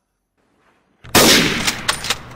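A single loud sniper-rifle gunshot about a second in, followed by a fading tail with a few sharp cracks in it.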